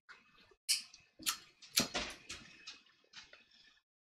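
Sharp clicks from a pipe lighter being handled and lit: three stronger ones about half a second apart, starting just under a second in, then a few softer ticks.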